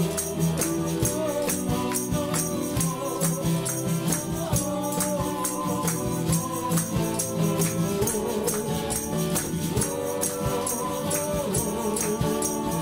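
Live acoustic band: a man singing lead over a strummed acoustic guitar, with other men singing along in chorus and a shaker keeping a steady beat.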